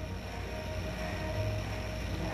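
Steady low background rumble with a faint steady hum, a little louder around the middle.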